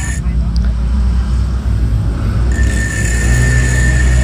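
Bench grinder running with its abrasive wheel grinding the side of a steel bearing inner ring, shaping it into a drill bushing. A steady low motor hum throughout; the higher grinding noise fades for about two seconds and comes back with a thin steady whine.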